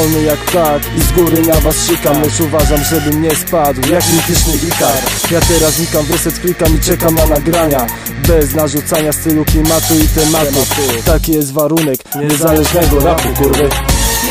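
Polish hip hop track: a rap vocal delivered over a beat with steady bass and drums. The bass drops out briefly about two seconds before the end, then the beat comes back.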